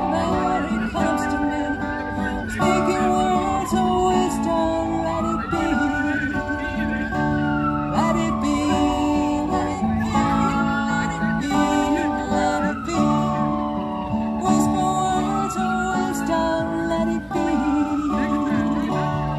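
Acoustic guitar playing steady chords through a small amplifier, with a high tone that rises, holds and slides down again about every two and a half seconds.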